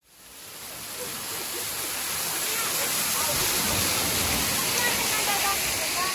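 Steady rush and splash of a waterfall pouring down a rock face onto stones, fading in over the first two seconds, with faint voices of people close by.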